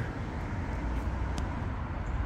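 Steady low outdoor background rumble, with one faint click about a second and a half in.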